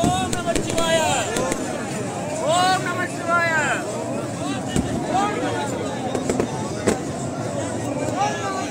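Crowd of many voices calling out at once and overlapping, pitches rising and falling, over a noisy hubbub. A few sharp cracks cut through, the sharpest near the end.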